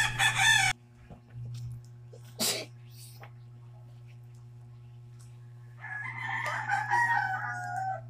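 A rooster crowing: a short call at the start and a longer, drawn-out crow about six seconds in whose pitch falls at the end. A steady low hum runs underneath.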